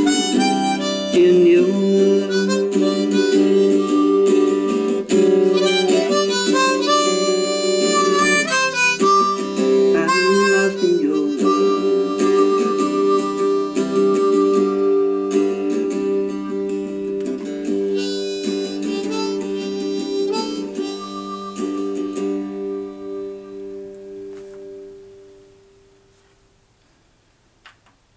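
Harmonica played with both hands cupped around it: an outro solo of chords and melody notes. It ends on a long-held chord that fades out a few seconds before the end.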